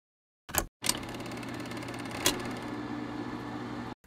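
A short burst about half a second in, then a steady, fast mechanical clatter over a low hum, with a sharp click a little after two seconds.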